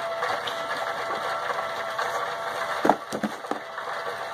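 Rotary rock tumbler running steadily: a motor hum under the rocks turning over in its barrel. A brief louder sound comes about three seconds in.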